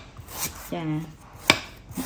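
Large kitchen knife chopping through a root onto a thick round wooden chopping block: a few sharp knocks, the loudest about one and a half seconds in.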